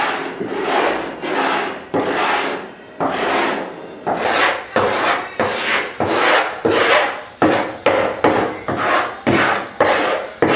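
Wood being abraded by hand in repeated rasping strokes, each starting sharply and fading. The strokes come about once a second at first, then quicken to about two a second in the second half.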